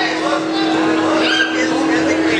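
Background din of a busy indoor attraction: a steady hum under sweeping, rising-and-falling game sound effects and people's voices.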